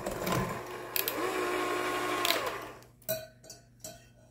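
Electric hand mixer with wire beaters whisking brownie batter in a glass jug. Its motor whine rises about a second in, then winds down and stops about two and a half seconds in, followed by three light knocks.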